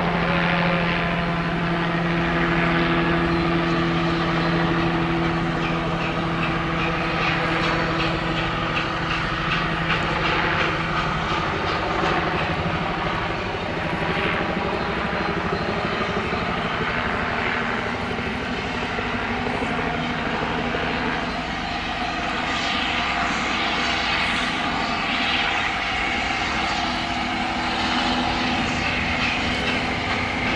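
A train running along the line in the valley: a steady rumbling drone with a low hum, without a clear exhaust beat.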